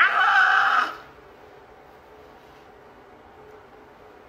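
A woman's short, strained cry, about a second long, as she yanks a wig down over her hair.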